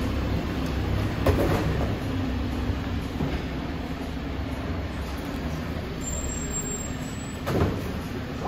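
Volvo rear-loader garbage truck's diesel engine running steadily at low revs, a low rumble, with a sharp knock about a second in and another thump near the end.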